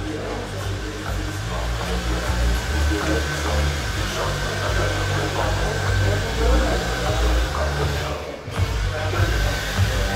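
Hand-held hair dryer blowing steadily, with a brief drop-out about eight and a half seconds in.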